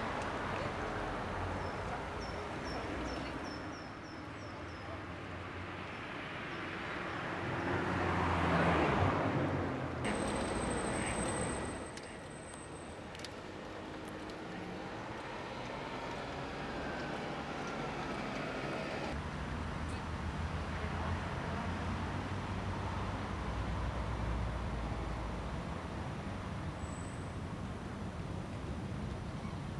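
Outdoor ambience with a steady low wind rumble on the microphone; a swell of noise builds and peaks about nine seconds in, and a bird gives a quick run of high chirps a few seconds in.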